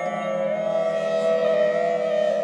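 Meditation music: a flute holds one long, steady note over a sustained drone, in an Indian classical style.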